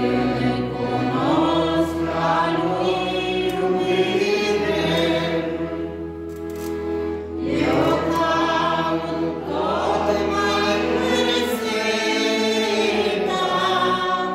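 A church congregation of men and women singing a hymn together, with a brief break between phrases about seven and a half seconds in.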